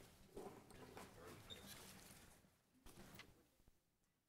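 Near silence: faint room noise with a few soft knocks and rustles, then dead silence near the end.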